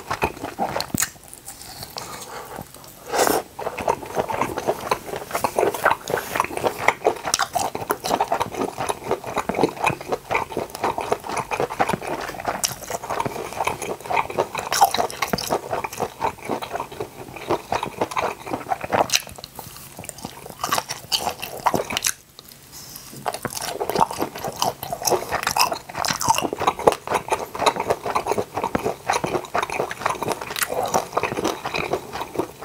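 Close-miked chewing and biting of grilled octopus skewer pieces: a dense run of wet clicks and mouth smacks, with a few short pauses.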